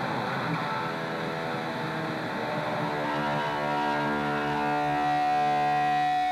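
Distorted electric guitar in a live solo, with a downward slide in pitch near the start, then long sustained notes. From about three seconds in, a single high note swells and is held.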